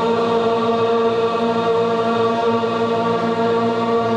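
Devotional chant music: voices or a drone holding one steady, sustained chord without a break.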